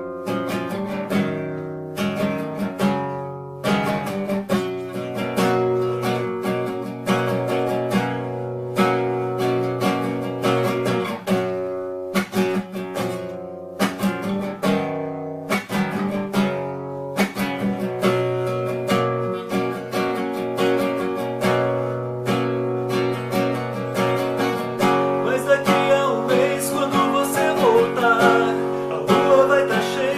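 Music: acoustic guitar strumming chords in a steady rhythm, with a wavering melodic line coming in over it for the last few seconds.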